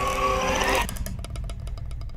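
Trailer sound design: a sustained droning tone with a slowly falling pitch, cut off abruptly a little under a second in and replaced by a rapid, even ticking pulse over a low rumble.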